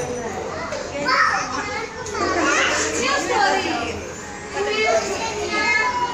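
A roomful of young children chattering and calling out at once, many high voices overlapping with no single speaker standing out.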